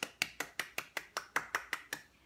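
One person clapping her hands quickly and evenly, about five claps a second, ten or so in all.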